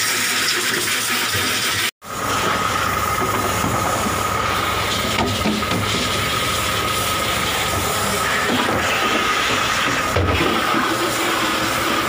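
A hose spraying water, then, after a sudden cut about two seconds in, a steady mechanical drone with a thin high whine running on, typical of a fishing boat's machinery.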